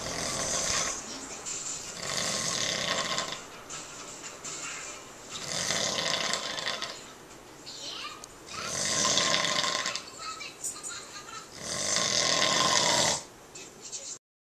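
A man snoring in deep sleep: five long snores, about three seconds apart.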